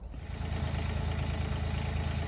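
Kubota compact tractor's engine running steadily under load as its front loader works the garden's gravel, rising in level in the first half second.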